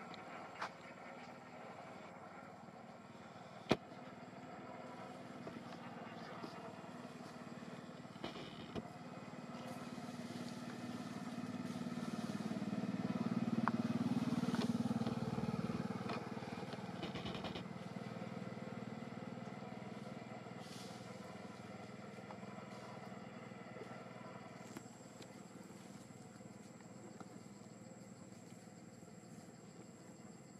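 A motor vehicle passing by: a low engine hum swells over several seconds to a peak about halfway through, then fades away. A single sharp click comes a few seconds in.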